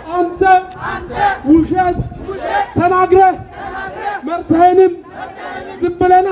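Marching protest crowd chanting slogans in Amharic, led by a man shouting the lines through a hand-held microphone and loudspeaker. The chant comes as short, loud, repeated phrases.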